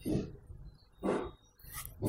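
A dog barking twice, short barks about a second apart.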